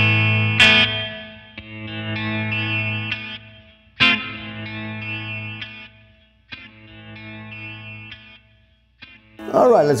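Electric guitar chords played through the Flamma FS03 delay pedal on its Galaxy setting, a modulated delay that warbles. New chords are struck about a second in, about four seconds in and about six and a half seconds in. Each rings out and fades, dying away just before the end.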